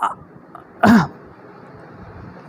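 A man clears his throat once, briefly, just under a second in.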